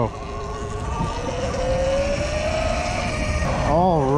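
Sur Ron electric dirt bike's motor and drive whining, the pitch rising steadily as the bike speeds up, over low wind rumble on the microphone.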